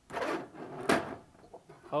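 Plastic wrestling action figures handled in a toy ring: a short scuffing rustle, then one sharp plastic clack just under a second in as a figure is knocked down onto the ring mat.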